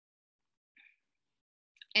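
Near silence, broken by one faint brief sound a little under a second in, then small mouth clicks and the start of a woman's speech at the very end.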